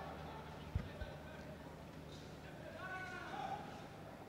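Faint indoor court ambience during a kabaddi raid. Two soft low thuds come about a second in, from players' feet on the mat, and faint distant voices come about three seconds in.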